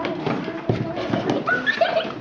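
Young children's voices, with scattered knocks and footfalls as a child moves about on a hard classroom floor; a higher voice rings out near the end.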